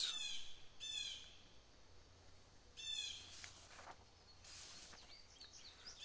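A wild bird calling three times, each call a quick run of high notes falling in pitch, the first two about a second apart and the third two seconds later. A soft hiss of noise follows near the end.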